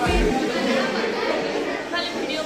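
Group of students chattering and laughing together in a classroom, many voices overlapping, over background pop music. A short low thump right at the start.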